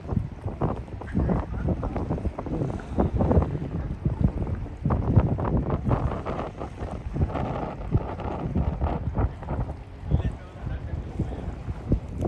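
Wind buffeting the microphone in uneven gusts, a low rumble rising and falling throughout.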